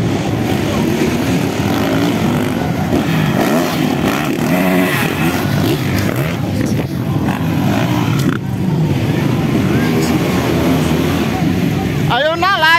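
Motocross dirt bike engines running and revving on the track, pitch rising and falling with the throttle, alongside spectators' voices.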